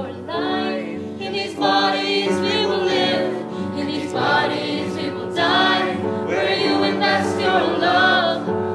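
A female soloist and a choir singing a number from a stage musical, with long held notes.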